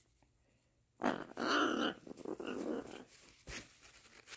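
Blue-and-gold macaw giving a raspy play growl while wrestling: one loud growl starts about a second in, followed by a shorter, fainter one.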